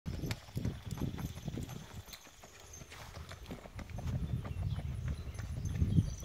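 Hoofbeats of a Tennessee Walking Horse gaiting on packed dirt: a quick, uneven patter of hoof strikes that softens a couple of seconds in, with a low rumble building toward the end.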